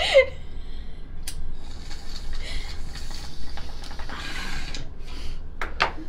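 A hit from a glass water bong: a lighter click about a second in, then water bubbling in the bong for a few seconds as the smoke is drawn, with a couple of short sharp breaths near the end.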